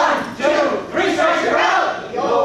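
A group of voices singing loudly together in unison, in short phrases.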